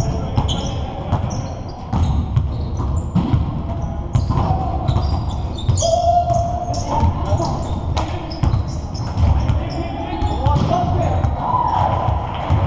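Pickup basketball game in a gym: a basketball bouncing on a hardwood court, sneakers squeaking and players shouting to each other, all echoing in a large hall.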